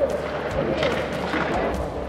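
Ice-rink bench ambience picked up by a player's body microphone: a steady background hubbub with faint voices and a few short knocks.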